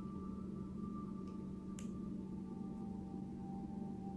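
Steady low background hum with faint held higher tones, and a single faint tick about two seconds in.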